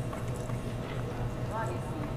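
Steady low electrical hum with a few faint light clicks of small objects being handled, and a brief faint vocal sound near the end.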